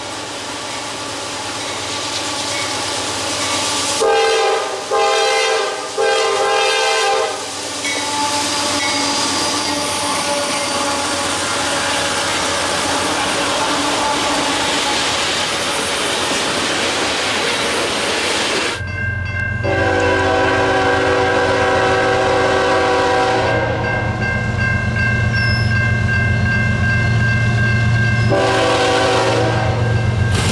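A freight locomotive's horn sounds several short blasts, then the train's cars roll past with a steady rumble of wheels on rail. After a sudden change, another locomotive's horn holds a long chord over a low rumble as it approaches, and a differently pitched horn sounds near the end.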